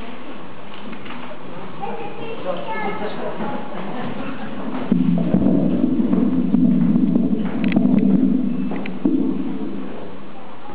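Indistinct chatter of children and adults in a large hall, becoming louder and closer about five seconds in, with a couple of light knocks near the end.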